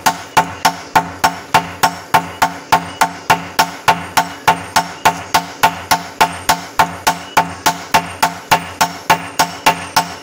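Two hand hammers striking red-hot bearing steel on an anvil in turn, a steady ringing rhythm of about three blows a second, as the steel is forged into a machete (golok) blade.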